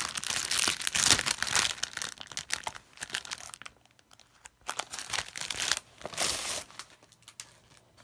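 Clear plastic shrink-wrap on a 12x12 scrapbook paper pad crinkling as it is torn open and peeled off. It comes in irregular crackling bursts, dense at first, with a short lull in the middle and more bursts after it.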